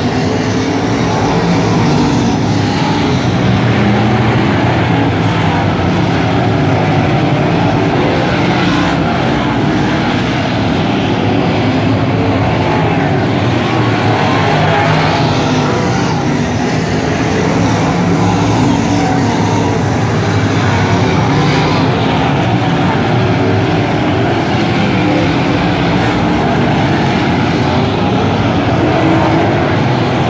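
A pack of dirt-track race cars' V8 engines running hard around the oval, a loud, steady din that swells a little as cars pass close by.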